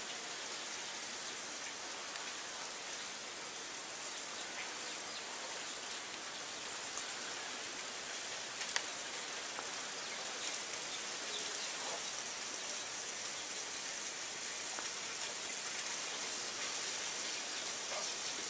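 A steady, even hiss with a faint crackle and a couple of soft clicks.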